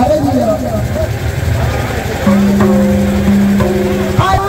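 Voices of a crowd, then from about halfway in a steady, low, horn-like tone held for about two seconds with a brief break in the middle.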